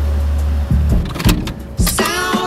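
A car driving along a street, its tyre and road noise filling the first second or so. Music plays underneath, with its bass dropped out.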